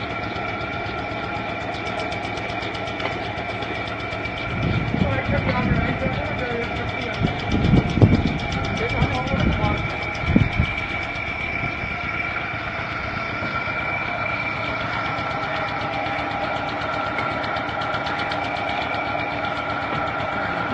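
Motor-driven homemade ladder conveyor running steadily, with a fast, even mechanical clatter. A few heavy low thumps come between about five and eleven seconds in.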